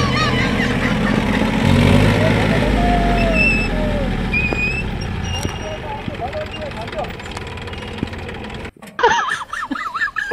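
Massey Ferguson 241 DI tractor's diesel engine running as it drives away, loud at first and then fading as it goes. A few short high chirps sound over it, and near the end an abrupt cut brings in voices.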